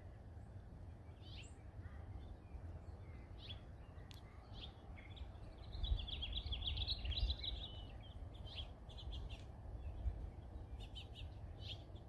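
Faint outdoor birdsong: small birds giving scattered short chirps, with a denser twittering run about six seconds in, over a low steady rumble.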